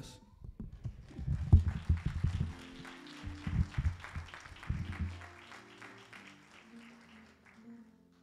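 Congregation applauding, with several heavy low thumps in the first few seconds, the loudest about a second and a half in. A keyboard joins with sustained chords about halfway through. The applause fades away near the end while the chords go on.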